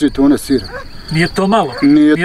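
Crickets chirping in a steady, high-pitched pulsing trill behind a man's voice, which speaks briefly at the start and again in the second half.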